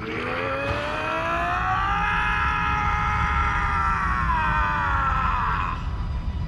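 A long, loud wailing cry that rises in pitch, holds, then slowly falls and cuts off just before the end, over a steady low rumble.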